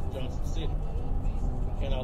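Steady low rumble of a moving car's road and engine noise, with a man's voice talking faintly over it.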